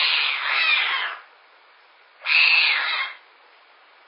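A baby animal calling twice with harsh, raspy calls: the first lasts about a second, the second is shorter and starts about two seconds in.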